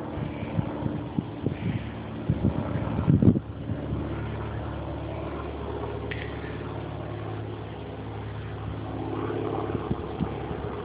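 A steady low mechanical hum, with a few short bumps in the first few seconds.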